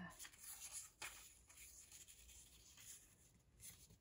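Faint rustling and sliding of paper cut-outs handled on a drawing sheet, a little louder in the first second or so, then quieter handling.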